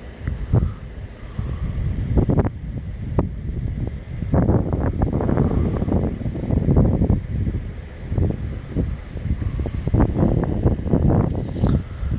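Wind buffeting a phone's microphone in uneven, gusty rushes, heavy at the low end.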